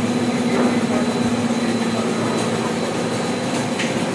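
Carton folder-gluer (gluing and pasting machine) running steadily, a continuous mechanical running noise with a constant low hum.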